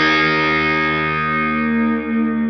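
Rock music: a distorted electric guitar chord held and left ringing, slowly fading, with no drums.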